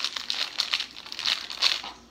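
Plastic snack wrapper crinkling as it is handled: a quick, irregular run of crackles with no pause.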